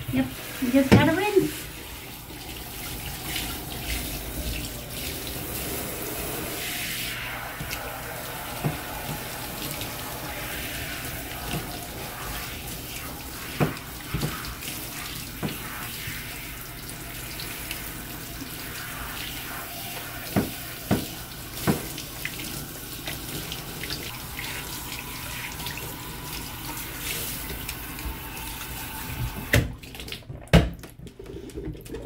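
Handheld shower sprayer running water over a wet dog in a bathtub: a steady spray, with a few sharp knocks along the way. The water cuts off just before the end.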